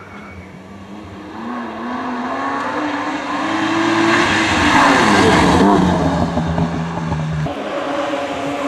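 Rally car engine, apparently a BMW E36 3 Series, accelerating hard as it comes closer. Its pitch climbs steadily, falls away suddenly about four seconds in, and then holds steadier. The car is loudest as it passes, around five seconds in.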